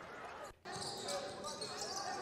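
Natural sound of basketball play in a gym: a ball bouncing on the court, with faint voices in the background. The sound drops out briefly about half a second in, at a cut between clips.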